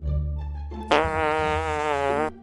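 A low music bed, then about a second in a long buzzy cartoon sound effect with a wobbling pitch, lasting about a second and a half.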